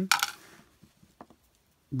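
Small hard-plastic toy gun accessory dropped into a plastic toy chest and handled: a brief rattle, then a few faint, light clicks of plastic on plastic.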